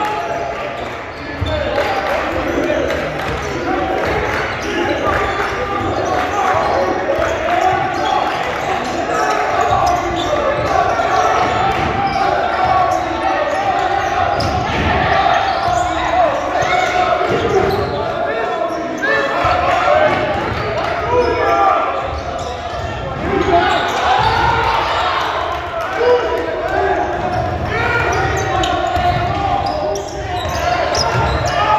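Basketball being dribbled on a hardwood gym floor during live play, under continuous shouting and chatter from players and spectators, echoing in a large gymnasium.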